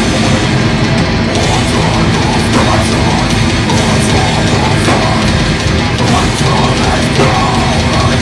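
Heavy metal band playing live, loud and dense without a break: distorted electric guitar, bass guitar and a drum kit.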